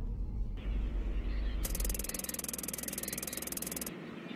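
Computer-terminal typing sound effect: a rapid, even run of clicks that starts about a second and a half in and stops abruptly just before the end, as the caption types out. A low rumble comes before it.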